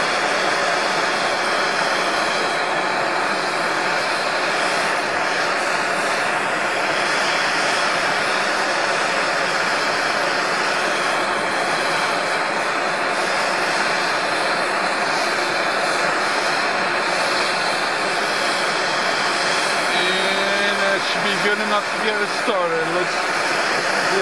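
MAPP gas hand torch burning with a steady hiss, its flame aimed into a small firebrick forge to bring an O1 tool-steel drill rod up to forging heat.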